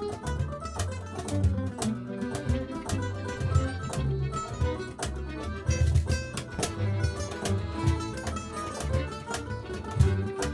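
Small acoustic band playing live: violin, accordion, acoustic guitar and upright double bass, with a steady pulse of percussive hits under the tune.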